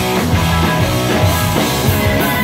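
Punk rock band playing live, loud and steady: electric guitar, electric bass and a drum kit.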